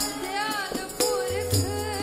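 Sikh kirtan: women's voices singing a hymn over harmonium, with tabla strokes about once a second and a deep tabla bass tone in the second half.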